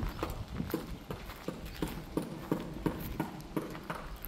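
Footsteps walking at a steady pace over loose stony, gravelly ground, about three steps a second.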